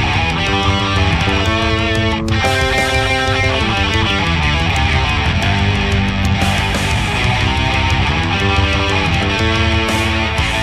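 Two electric guitars playing melodic lead lines together over a rock backing track, with notes changing quickly over a steady drum beat.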